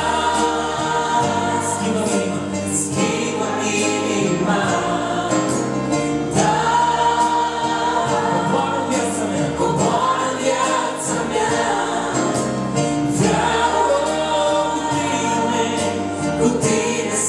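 A woman and a man singing a Christian worship song in duet over electric keyboard accompaniment, in phrases of a few seconds each.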